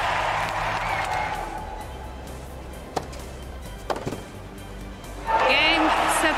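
Stadium crowd applause fading away, then two tennis racket strikes on the ball about a second apart over a hushed crowd, followed near the end by a sudden eruption of crowd cheering and whistling as the match point is won.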